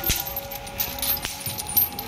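Heavy iron leg chains on a walking elephant clinking and jangling irregularly with its steps, with a dull knock right at the start.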